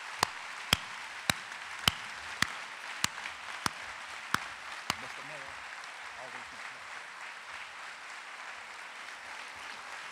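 Audience applauding steadily, with one nearby clapper's sharp claps standing out about every 0.6 s until about five seconds in, after which the general applause carries on alone.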